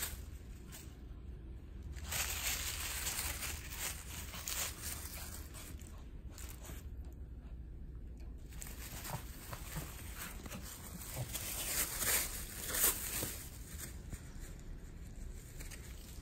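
Shih Tzu tearing and rustling thin paper with her teeth, in spells of ripping and crinkling with short pauses between them.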